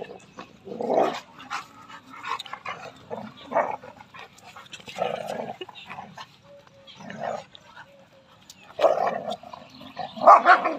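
A young Rottweiler and a black Labrador growling and barking at each other in short bursts as they wrestle, with the loudest outbursts about a second in and near the end.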